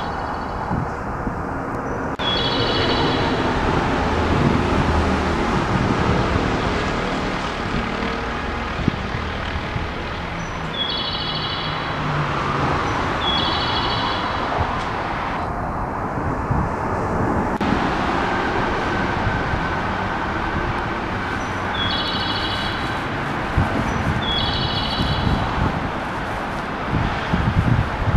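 Train passing through the station without stopping, a steady loud rumble. A high electronic chime sounds in short pairs several times over it.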